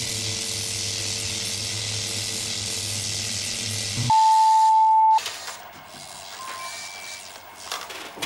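Static hiss with a steady electrical buzz from a broken-up video transmission, cut off about four seconds in by a steady test-pattern beep that lasts about a second. After that there is faint room tone with a few light clicks near the end.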